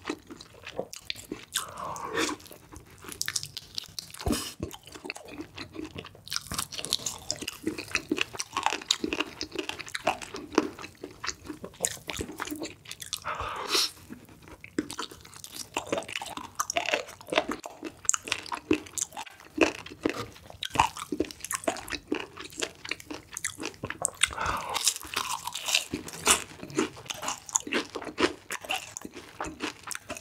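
Close-miked crunching and chewing of cheese-sauce-dipped fried chicken: a dense run of crisp crackles, with a few louder bites along the way.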